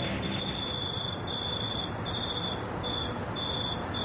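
Outdoor early-morning ambience: a high, steady-pitched insect trill repeating in short pulses about every half second over a soft even hiss.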